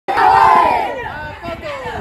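A large group of children shouting together, loudest in the first second with a falling pitch, then quieter voices.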